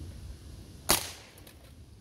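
Daisy 2003 CO2 pellet pistol firing a single shot about a second in, one sudden sharp report.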